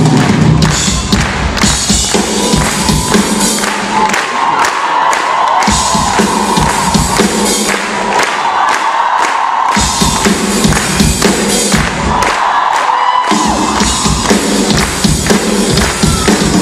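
Drum kit played live, with steady snare and cymbal hits throughout and the bass drum dropping out for stretches, while a large crowd cheers through those gaps.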